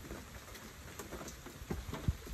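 Steady rain falling, with a few sharper drops tapping on nearby surfaces.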